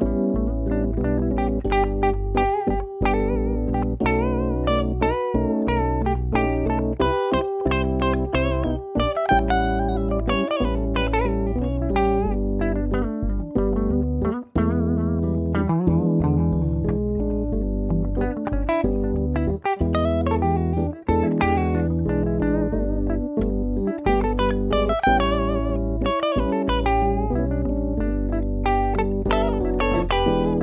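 Instrumental break of a laid-back soul song: PRS electric guitar playing lead lines with bent, wavering notes over keyboard chords and bass.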